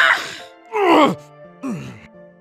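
A voice actor's loud yell at the start, then two short pained cries, each falling in pitch, over low background music.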